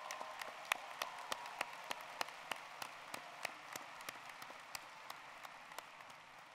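Crowd applause in a large hall, with one person's sharp hand claps close to the microphone at about three a second, the applause slowly dying down near the end.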